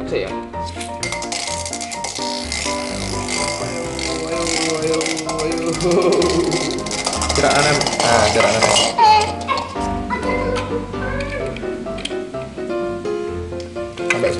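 Toy spinning tops (non-genuine Beyblades) spinning and clashing in a metal wok: a dense metallic rattling and scraping that starts just after the launch and dies away about nine seconds in. Background music plays throughout, and voices call out in the middle.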